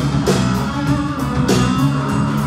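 Live country-rock band playing an instrumental stretch between sung lines: guitars with a drum kit keeping a steady beat, and no singing.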